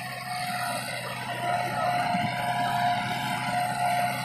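Farmtrac tractor's diesel engine running steadily under load as it drags two disc harrows through tilled soil, with a steady whine above the engine note.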